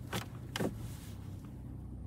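Two short clicks from a Land Rover Defender 110's gear selector being shifted from park into reverse, over the steady low hum of the idling engine.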